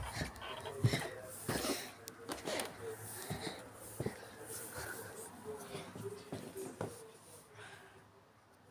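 Faint wheezy breathing close to the microphone, with scattered short clicks and rustles of handling.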